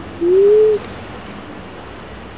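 A bird's single low coo: one pure note lasting about half a second, rising slightly in pitch.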